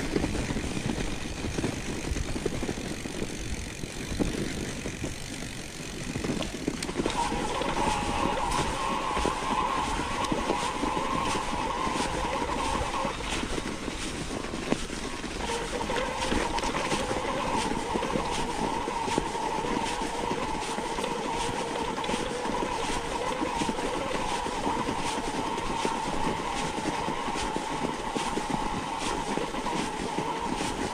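Mountain bike coasting down a track of packed snow: tyre rumble and rattling knocks from the bike over the bumps. From several seconds in, a steady humming buzz comes from the rolling bike, breaking off briefly about halfway before carrying on.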